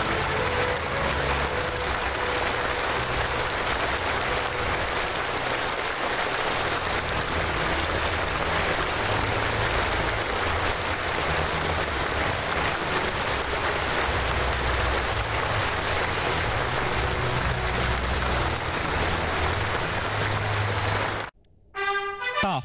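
Sustained applause from a large audience in a big hall, steady throughout and cutting off suddenly near the end.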